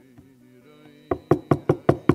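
Knuckles rapping quickly on a wooden lectern, about five sharp knocks starting a second in, acting out a knock at a door. A faint held background-music chord sounds underneath.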